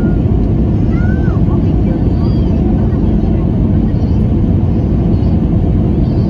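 Steady, loud low rush of jet engine and airflow noise heard inside an airliner's cabin at a window seat beside the engine, during the low-altitude final approach to landing.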